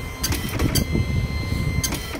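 Dot-matrix impact printer printing, its print head rattling as it strikes gold foil onto a black sheet for foil embossing, with a few sharp clicks along the way.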